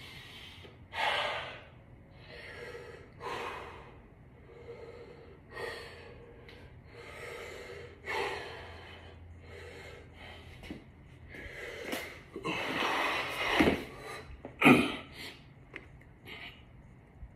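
A man breathing hard from exertion during a push-up set, with heavy breaths in and out every one to two seconds. The breaths are loudest and closest together near the end.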